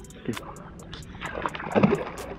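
A hooked peacock bass thrashing at the surface of shallow water while held by lip grips, with splashing that builds to a loud splash near the end.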